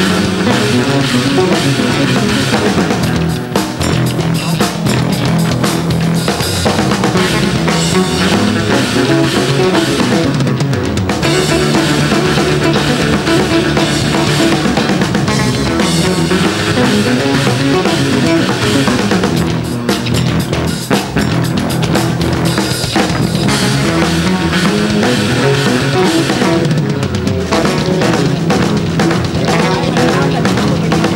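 Live rock band music: several electric bass guitars playing bass lines together over a drum kit, continuing without a break.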